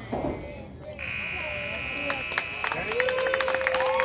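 Scoreboard buzzer sounding one steady high tone that starts abruptly about a second in and lasts about two and a half seconds, over players' voices. A long held shout rises in near the end.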